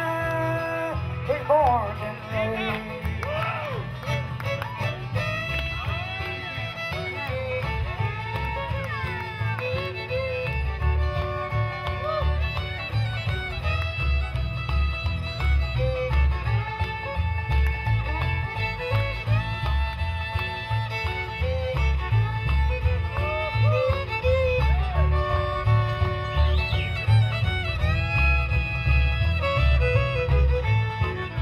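Live bluegrass band playing, with a fiddle taking the lead over strummed acoustic guitar and banjo, and a steady beat underneath.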